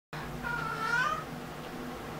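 A domestic cat meowing once to be let out of the room: a single meow of under a second, starting about half a second in and rising slightly at the end.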